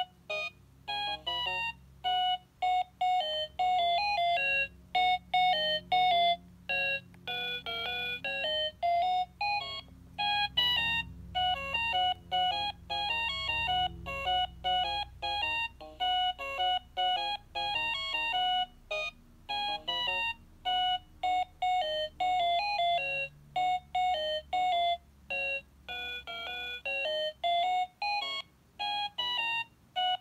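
VTech Rocking Animal Bus toy playing its built-in electronic melody through its small speaker: a bright, beeping tune of short notes with brief pauses between phrases. It cuts off suddenly at the very end.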